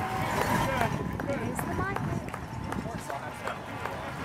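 Crowd of spectators outdoors: many voices talking at once, with a few short calls that rise in pitch.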